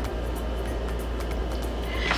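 Steady low hum of background room noise, with no distinct events.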